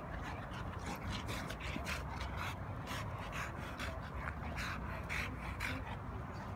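Two large mastiff-type dogs play-fighting: an irregular, rapid run of short huffing breaths and scuffles, with faint dog whimpers.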